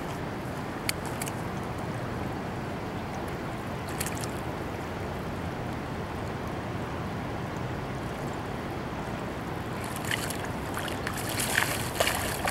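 Steady wash of river water with a couple of faint clicks, then splashing near the end as a released walleye thrashes free in the shallows.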